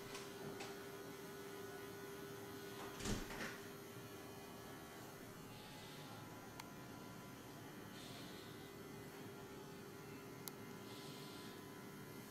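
Faint rubbing of hands over a man's scalp and ears during a barber's head massage, heard as a few soft swishes, with one louder thump about three seconds in and a steady low electrical hum underneath.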